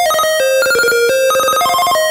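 A 1-bit PC-speaker square-wave tune, slowed down with reverb added. It plays a fast run of short beeping notes that jump up and down in pitch without a break.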